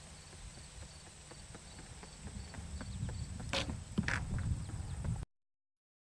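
Running footsteps on a paved path, coming closer and growing louder, with two sharp scuffs about three and a half and four seconds in. The sound then cuts off abruptly to silence about five seconds in.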